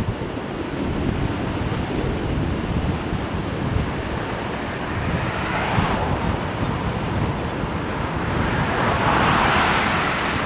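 Wind buffeting the microphone of a moving camera: a continuous rough, rumbling noise, swelling louder about nine seconds in.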